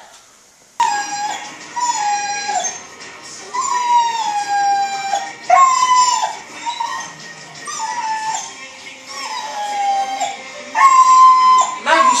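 A dog whining at a glass door, about eight drawn-out high whines, each sliding down in pitch at its end. It is asking to be let outside.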